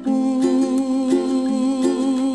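Background music: plucked strings playing a slow melody over a sustained hummed or held voice-like tone.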